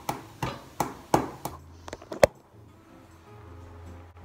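A hand tapping on a ceramic mug: about eight sharp, ringing taps at an uneven rhythm over two and a half seconds, the loudest one near the end. A faint low hum follows.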